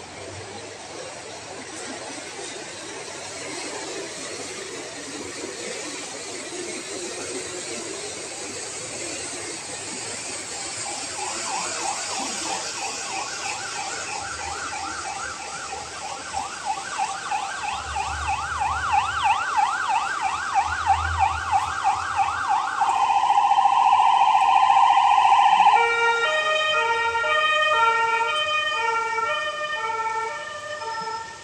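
An emergency-vehicle siren, growing louder, over steady outdoor background noise. From about a third of the way in it sounds a fast, repeating yelp. It then holds a steady tone for a few seconds before switching to a two-tone hi-lo pattern near the end.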